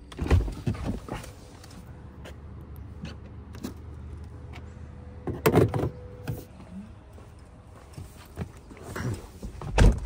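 Tesla Model Y's electronic door release clicking and the door opening with a thump. About five and a half seconds in, a clunk as the Supercharger connector is hung back in its holder on the post. A heavy thump near the end as the car door shuts.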